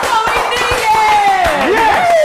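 Excited fans' voices: long, falling, drawn-out calls with laughter.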